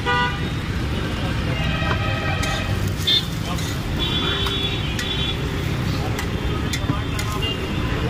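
Street traffic rumble with several vehicle horns honking, over background voices. Sharp metal clicks of a spatula on the steel griddle come every so often.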